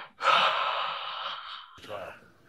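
A man's loud, breathy scream of shock, held for about a second and a half, with a shorter gasp near the end.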